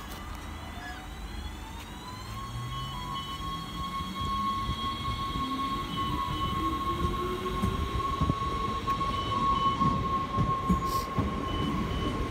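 NS Sprinter Lighttrain (SLT) electric multiple unit pulling away from standstill: its traction motor whine rises in pitch as it accelerates, a high steady tone settling in about two seconds in while a lower tone keeps climbing. Wheel and rail rumble grows louder toward the end as the train picks up speed.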